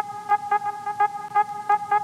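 Outro music: a held, horn-like chord that pulses about three times a second.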